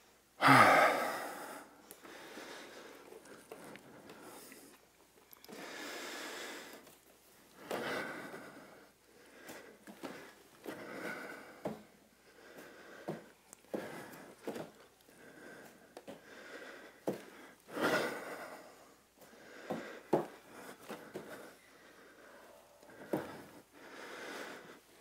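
Heavy, effortful breathing during handstand jump reps: a loud exhale with a falling grunt about half a second in, then repeated hard breaths and gasps. A few short knocks of hands and feet landing on the wooden floor come in between.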